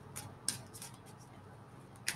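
Faint clicks of a tarot deck being handled and shuffled in the hands, a few soft ticks in the first half second, then quiet room tone.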